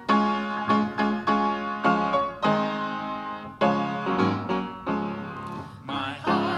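Upright piano playing an introduction in a slow series of struck chords, each ringing and fading before the next.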